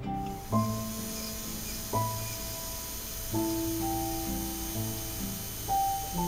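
Background score: soft, slow keyboard chords, a new chord struck every second or two and held.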